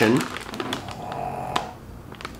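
Faint snoring in the background, under light crinkling and ticking of a plastic snack bag being handled.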